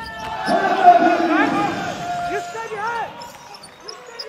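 A basketball TV commentator's excited, drawn-out shout with long held notes, loudest about a second in and tailing off by three seconds. Quick rising sneaker squeaks on the hardwood court come through about a second and a half in.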